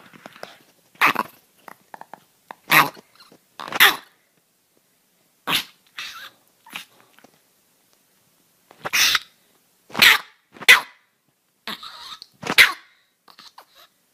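A small dog, a Chihuahua, giving about eight short, sharp barks, unevenly spaced, with a longer pause midway.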